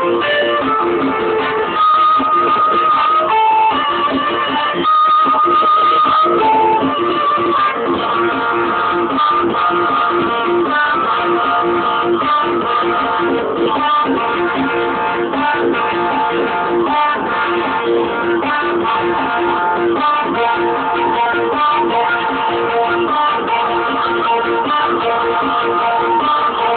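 Live instrumental ensemble music: a low figure repeating at an even pulse, with held higher melody notes above it.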